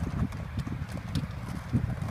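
Uneven low rumble of wind buffeting a phone microphone, with a few light, sharp clicks from a stunt scooter's wheels rolling over concrete.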